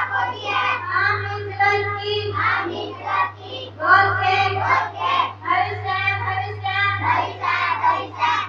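Girls singing a song into microphones, amplified through a PA system, over a steady low hum.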